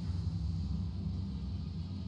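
Low, steady droning from an online horror slot game's dark ambient soundtrack as the last reel spins.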